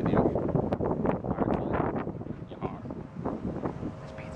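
Wind buffeting the camera's microphone in gusts on an open ship's deck, a rough, uneven rumble with quick irregular spikes, mixed with camera handling noise.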